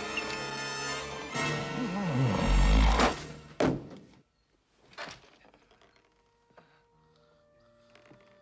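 Loud, fast film-score music that cuts off about three and a half seconds in on a sharp thud. Then it is almost quiet, with a single knock about five seconds in, and soft, gentle music comes in near the end.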